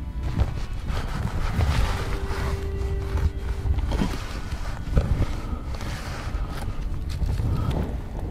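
Wind noise on the microphone with rustling and knocks from the hide's cloth cover being handled at the viewing opening, a couple of sharper knocks near the middle, over soft background music.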